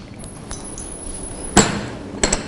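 Steady hiss of a lit gas burner under an empty steel frying pan as oil is squeezed in, then one sharp knock about one and a half seconds in: the plastic squeeze bottle set down on the stainless steel counter.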